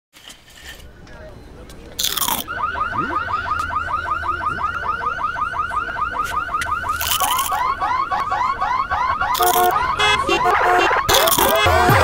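Loud crunches of tortilla chips being bitten, four of them, each followed by another car alarm starting up. First comes a fast rising, repeating whoop, then a lower sweeping alarm, then stepped beeping tones, so the alarms pile on top of one another and grow louder.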